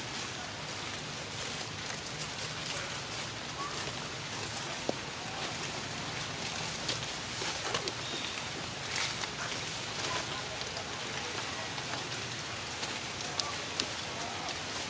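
Steady outdoor background hiss with scattered faint clicks and rustles.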